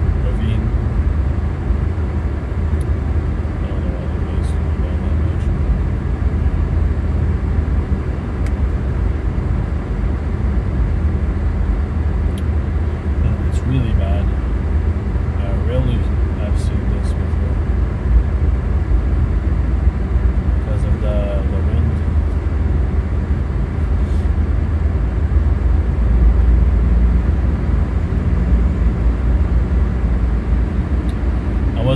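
Cabin noise of an Infiniti Q50 Red Sport cruising on a snow-covered highway: a steady low drone of tyres and engine, with occasional faint ticks.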